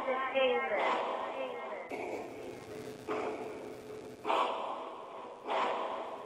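A breathy, echoing voice in short phrases that start again about every second and fade each time, part of a channel intro sound logo.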